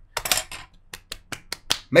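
A few small knocks near the start, then a quick run of about seven sharp little clicks over roughly a second.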